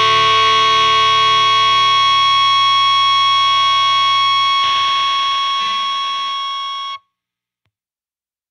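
Black metal ending on a held, distorted electric guitar chord that rings on steadily, thins out about halfway through, then cuts off abruptly, leaving silence for the last second.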